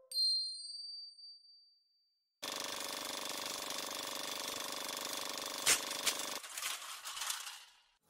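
Studio logo sound effects: a bright, high chime rings and dies away over about two seconds. After a short silence a dense, sustained electronic tone swells in, with a sharp hit about halfway through, then fades out near the end.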